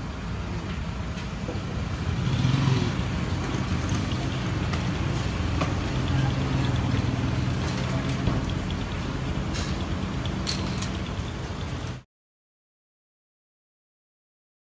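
A motor vehicle engine idling nearby, a steady low hum that swells a little twice, with a few sharp clicks near the end; the sound cuts off abruptly about twelve seconds in.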